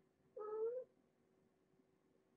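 A cat meowing once: a short call of about half a second that rises slightly in pitch.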